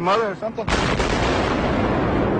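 A man's raised voice, cut off about two-thirds of a second in by a sudden, loud, steady roar of noise: a World Trade Center tower collapsing, with its dust cloud sweeping over.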